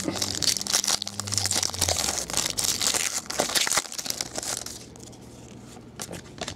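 A foil trading-card pack wrapper being torn open and crinkled by hand. The crackling goes on for about four and a half seconds, then dies down.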